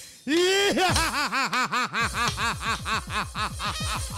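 A man's drawn-out theatrical laugh through a microphone and PA: a held opening cry, then a fast, even run of "ha-ha-ha" pulses, about five a second.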